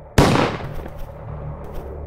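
A single gunshot: one sharp crack about a quarter of a second in that dies away over half a second, over a low steady drone.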